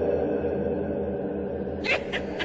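Steady low, dark drone, then a sudden high-pitched shriek near the end.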